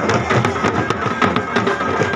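A marching pipe band playing: bagpipes carry a sustained melody over a steady beat of hand-carried drums, including a bass drum.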